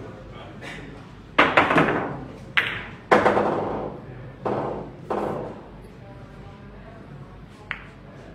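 Pool balls clacking against one another and the table cushions after a shot: a quick cluster of sharp clacks about a second and a half in, then single clacks at intervals over the next few seconds, each ringing briefly, and a faint click near the end.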